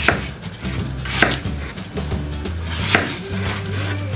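Kitchen knife slicing through a peeled apple and striking the cutting board three times, about a second or two apart.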